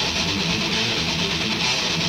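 Electric guitar playing a riff alone in a thrash/crust punk song, with the bass and drums dropped out.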